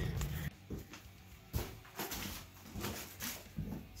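A few faint knocks and clicks of handling, spread across a few seconds, the sharpest about one and a half seconds in.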